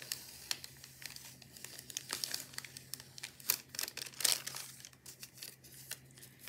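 Thin clear plastic packaging crinkling and rustling in the hands as a sticker is worked out of it, in irregular crackles.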